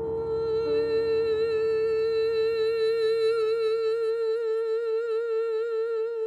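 A woman's voice holding one long sung note with a gentle vibrato, in a free vocal improvisation. Beneath it, a lower sustained chord dies away about four seconds in.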